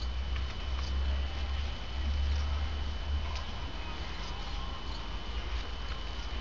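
Outdoor ambience dominated by a low, fluctuating rumble on the camera's microphone. Over it sit a thin, steady high whine and faint, scattered small clicks and chirps.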